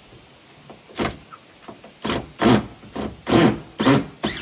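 Cordless drill run in about six short bursts, the motor spinning up and down each time, starting about a second in and coming quicker and louder toward the end.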